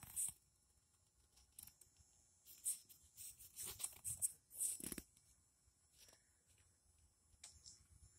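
Faint, scattered short rustles and ticks, a few a second at most, over near silence, with one slightly fuller rustle near the five-second mark.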